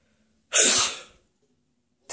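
A single loud sneeze about half a second in, starting abruptly and fading out within about half a second.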